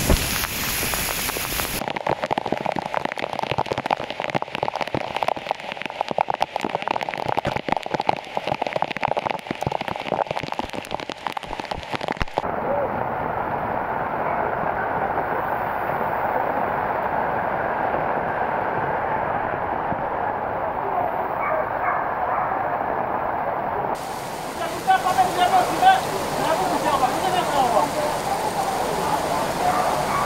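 Heavy rain pouring down, with a dense patter of drops for the first several seconds. The sound changes abruptly about twelve seconds in to a duller wash, and again about twenty-four seconds in, where people's voices mix with the rain.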